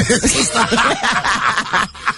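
Men laughing and chuckling together over one another, the laughter breaking off just before the end.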